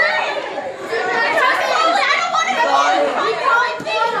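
Several girls chattering and talking over one another in a crowded group.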